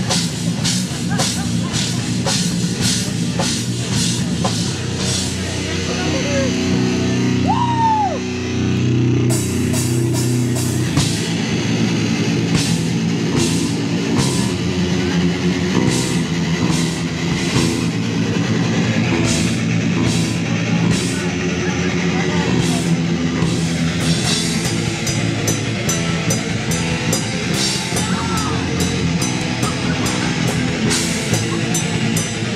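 Live metal band playing: heavily distorted electric guitars and bass over a drum kit, with a fast, steady run of drum hits and a brief high guitar squeal about eight seconds in.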